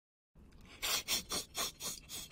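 A person's breathy, wheezing laughter in quick puffs about four a second, starting after a brief moment of dead silence.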